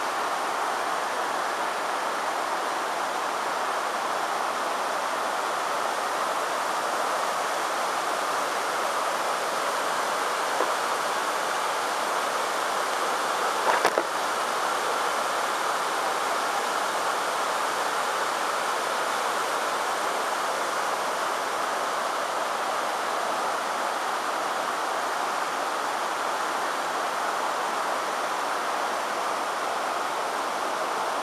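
Shallow mountain river rushing steadily over a stony bed, with a short knock about halfway through.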